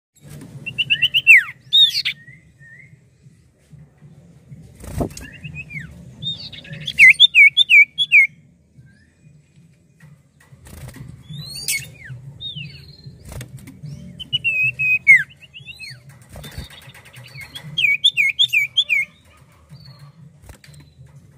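Common iora (cipoh) singing: bouts of quick repeated whistled notes and rising and falling whistles, about four bouts over the stretch. A few sharp knocks and a steady low hum sit underneath.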